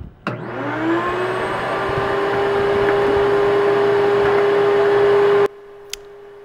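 Vacuum motor starting up, its whine rising in pitch as it spins up over about a second, then running steady and loud, drawing suction on a leaking PVC pipe so the vacuum pulls primer into the crack. About five and a half seconds in the sound drops abruptly to a much lower level.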